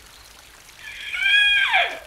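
Cartoon rain effect, a faint steady hiss of falling rain. About a second in, a high held tone with overtones sounds for about a second, then slides sharply down in pitch near the end.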